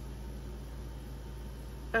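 Steady low background hum, room tone with no distinct sounds in it.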